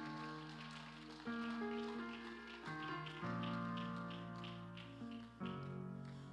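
Soft electric keyboard chords, each held and slowly fading before the next one comes in, changing chord about four times.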